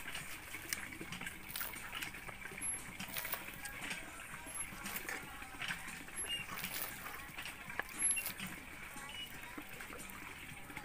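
Knife cutting up a plucked chicken on a wooden chopping block: soft scattered clicks and taps of the blade through meat and joints and against the wood, with a slightly louder knock about eight seconds in.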